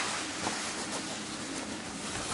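Black focusing cloth rustling as it is draped over the back of a view camera, an even noise with a faint tick at the start and about half a second in.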